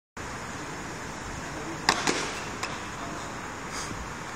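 Two quick, sharp slaps about two seconds in, from shoes landing on a tiled plaza floor, with a couple of fainter scuffs after. Steady hiss from the phone microphone lies underneath.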